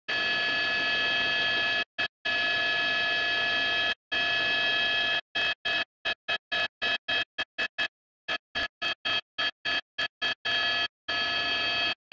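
Helicopter cabin noise heard through the crew's intercom or radio feed: a steady whine made of several held tones. It cuts in and out abruptly, in long stretches at first and then chopping on and off several times a second through the middle, as the mic gate opens and closes.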